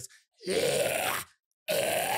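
A man demonstrating a harsh high metal scream with his own voice: two gritty, pitchless screams, each about a second long and sweeping upward, the second starting near the end.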